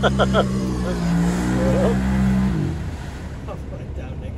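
An off-road vehicle's engine held at steady revs, then dropping back about two and a half seconds in. A man laughs at the start.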